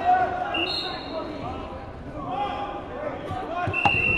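Crowd voices in a gym, then near the end a single long, steady referee's whistle blast with a sharp knock just before it. The whistle signals the start of wrestling from the referee's position.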